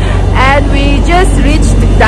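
People's voices talking indistinctly over a steady low rumble of vehicle engines.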